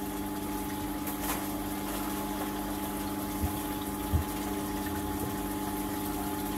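Small aquarium return pump running with a steady hum, water circulating through the tank and dissolving freshly added marine salt. Two faint low thumps a little past halfway.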